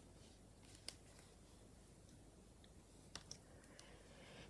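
Near silence with a few faint clicks of a metal crochet hook and yarn being worked through the holes of a leather bag base: one about a second in, two close together near the end.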